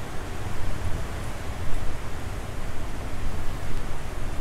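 Torrential rain falling: a steady, even hiss with a low rumble beneath it.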